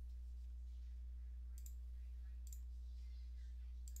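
Steady low hum with three faint, short clicks: one about one and a half seconds in, one at about two and a half seconds, and one near the end.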